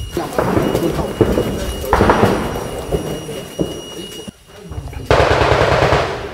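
Three heavy gunshot reports in the distance, one near the start, one about two seconds in and one about five seconds in. Each rolls on in a long echo that fades over a second or two.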